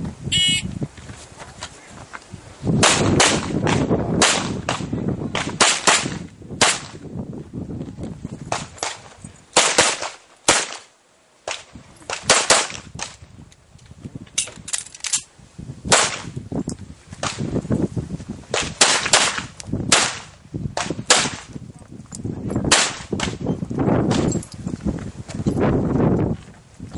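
A shot timer beeps once, then a handgun fires a long course of shots, mostly in quick pairs, with short pauses of a second or two between strings.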